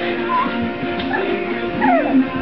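Lhasa Apso puppies whimpering and yipping during play-fighting: a couple of short, high whimpers, one sliding down in pitch near the end, over background guitar music.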